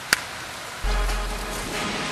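A hip-hop beat starts with a deep bass a little under a second in, after a short click right at the start.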